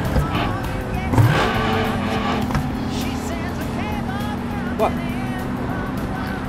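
Open-top sports car driving along with its engine running, the engine note rising about a second in, under background music.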